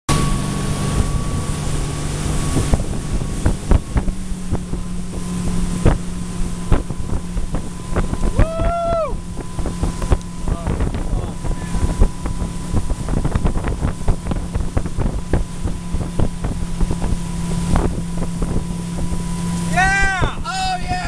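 A tow boat's engine running steadily at towing speed, with water rushing in the wake and wind buffeting the microphone. A short shout rises and falls about eight and a half seconds in, and another voice comes in near the end.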